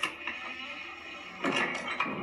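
Game music and sound effects played through a Google Home Mini's small speaker: a click at the start, then a steady musical bed with a few short sharp ticks about one and a half seconds in.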